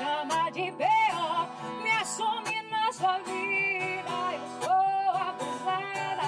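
A woman singing a sertanejo song, accompanying herself on an acoustic guitar.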